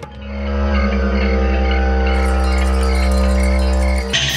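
Background score: chime tones over a sustained low drone, swelling in over the first second, with a soft note pulsing about three times a second.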